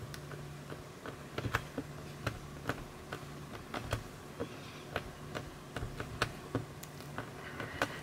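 Faint, irregular light taps and clicks of fingers pressing and shaping a polymer clay cane on a ceramic tile, with a faint steady low hum underneath.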